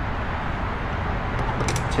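Steady background noise with a low hum, and a few light clicks about one and a half seconds in.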